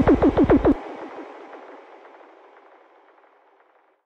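Final bars of a drum and bass track: a rapid stuttering run of falling-pitch electronic hits over bass, about seven a second, cuts off suddenly under a second in. An echoing tail follows and fades away to silence.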